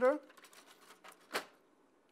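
The end of a spoken word, then a single short clack about one and a half seconds in: the paper tray of an HP Color LaserJet printer being pushed shut.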